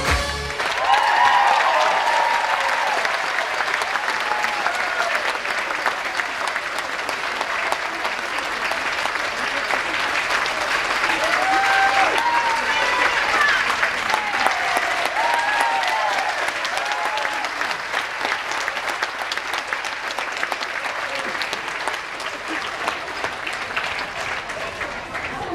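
Dance music cuts off in the first half second, then an audience applauds steadily, with a few voices calling out over the clapping.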